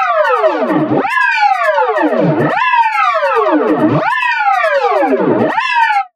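Electronically effects-processed sound with a synthetic, strongly pitched tone: its pitch jumps up and then glides steadily down, over and over about every one and a half seconds, a looping pitch-bend effect. It breaks off suddenly at the end.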